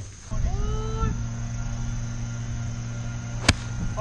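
A golf iron striking the ball: one sharp crack about three and a half seconds in, over a steady low hum and a thin high whine.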